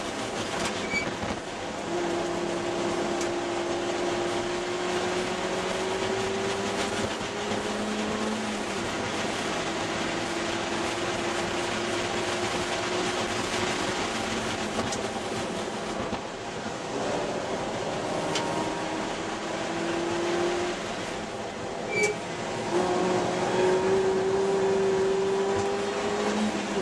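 A 2001 Ford Escort ZX2's 2.0-litre four-cylinder engine, heard from inside the cabin during hard track driving, its pitch climbing several times under acceleration and falling back between climbs, over heavy wind and road noise.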